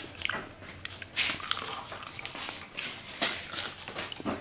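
Someone biting and chewing crispy fried chicken feet, giving irregular crunches, the loudest about a second in and again about three seconds in.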